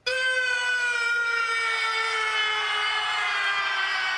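A single sustained horn-like tone in the performance soundtrack, starting abruptly and sliding slowly and steadily down in pitch.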